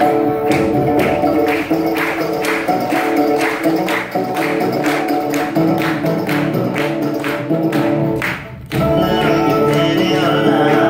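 Live acoustic band playing an instrumental passage: banjo and bowed strings over a steady drum beat of about two strokes a second. The music dips for a moment near the end, then comes straight back in.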